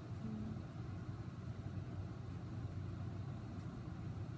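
Steady low background rumble with no words, and a brief low hummed sound about a quarter second in.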